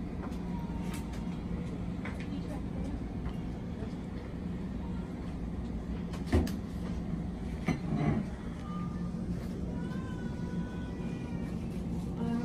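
Steady low hum of a hospital room, with a sharp knock about six seconds in, a softer knock near eight seconds, and faint distant voices near the end.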